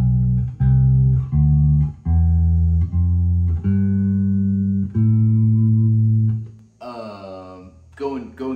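Four-string electric bass guitar plucked note by note through an A minor scale, about half a dozen single notes in a row, each ringing under a second, the last held longer before it fades. A brief bit of a man's voice comes near the end.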